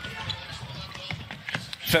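Basketball dribbled on a hardwood court: a few sharp bounces a little after a second in, over a low steady background of arena sound.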